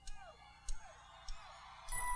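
Faint short chirps, each starting with a soft click, about three in two seconds. At the very end, bell-like chiming music begins.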